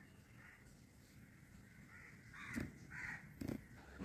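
Faint bird calls: a few short cries in the second half over otherwise near silence, with a couple of faint knocks.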